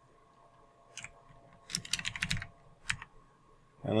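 Typing on a computer keyboard: a single keystroke about a second in, then a quick run of keystrokes, and one more shortly before the end.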